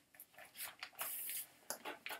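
Faint rustling of paper, like Bible pages being turned: a few short papery rustles and a longer swish about a second in.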